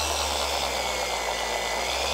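Gear-driven forced-rotation orbital polisher running steadily on its lowest speed with the pad on the paint: an even motor hum with a high whine that dips slightly in pitch about a second in. It keeps turning under the pad's load without stalling.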